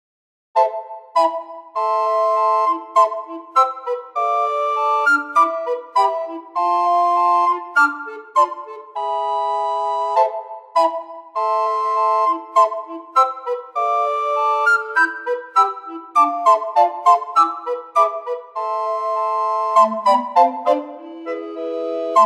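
Computer-generated recorder quartet playing a four-part arrangement, starting after a short silence about half a second in. The chords are short and detached, with some held notes, and a low part climbs in steps near the end.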